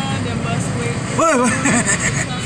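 Street traffic at a railway level crossing: a steady low rumble of motor vehicle engines, with a man's short exclamation a little over a second in.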